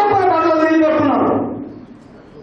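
A man speaking loudly into a podium microphone, one drawn-out phrase that tails off about a second and a half in.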